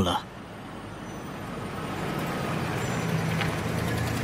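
City street traffic noise that grows slowly louder, with a low, steady engine hum coming in about halfway through.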